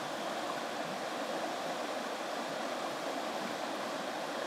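A small river rushing steadily nearby: an even, unbroken wash of flowing water.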